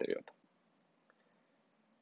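A man's voice ending a word, then near silence: quiet room tone.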